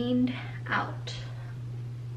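A woman's voice: a word trailing off at the start and a short breathy, whispered sound just before a second in, over a steady low hum that carries on alone to the end.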